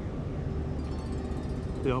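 Steady low drone of a land-drainage pumping station's diesel pumps running flat out, with a constant low hum tone.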